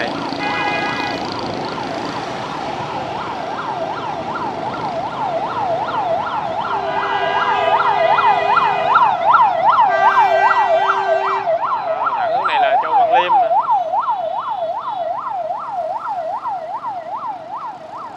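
Ambulance siren wailing in a fast rise and fall, about two cycles a second. It grows louder as the ambulance draws alongside and fades near the end. Two long horn blasts sound about seven and ten seconds in, over motorbike traffic noise.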